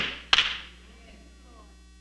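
A single sharp click, handling noise on a handheld microphone as hands close around it, about a third of a second in, ringing briefly in the room. After it only a faint steady hum remains.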